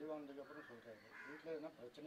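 A man's voice talking, fairly faint.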